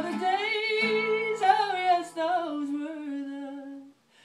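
A woman singing to her own acoustic guitar, holding long notes over a ringing strummed chord. The guitar fades out about three-quarters of the way through, leaving the voice alone on a held note that stops just before the end.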